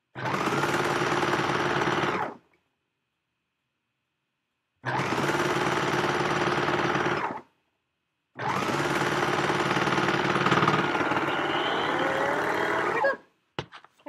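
Sewing machine stitching fabric at a steady speed in three runs: about two seconds, then a pause and about two and a half seconds, then a short pause and a longer run of about five seconds that stops shortly before the end.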